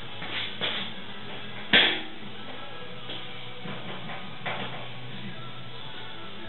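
One sharp knock about two seconds in, with a few lighter clicks and knocks, over steady faint background music.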